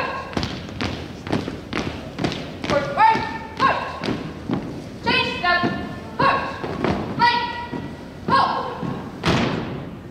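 A drill team's shoes striking a hardwood gym floor in step, about two steps a second, with shouted drill commands called out over the marching at intervals. The stepping ends with a loud stamp near the end as the team halts.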